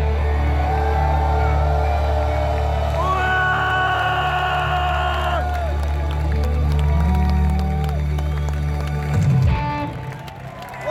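A live rock band through a festival PA, holding sustained notes over a heavy, steady bass, with an audience cheering and whooping. The band's sound breaks off with a short loud flare about nine seconds in, closing the song.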